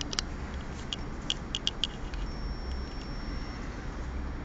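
A few light, sharp clicks, about six in the first two seconds, over a low steady hum, followed by a faint thin high tone lasting a little over a second.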